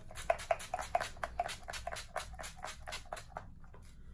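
Makeup setting spray being spritzed onto the face from a pump mist bottle: a quick run of about a dozen and a half short sprays, about five a second, stopping about three and a half seconds in.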